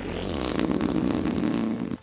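Aerosol can of whipped cream spraying onto a cup, a steady rough hiss as the cream is squirted out, stopping suddenly near the end.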